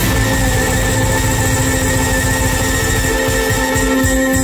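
Live band music with keyboard, saxophone and violin, holding one long steady chord over a low pulsing beat.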